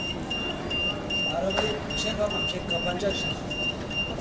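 Electronic beeping from an airport luggage-trolley dispensing machine: one high tone repeating steadily, about two and a half beeps a second, over faint voices in the hall.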